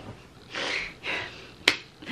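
Two soft breathy exhalations, then a single sharp hand clap near the end.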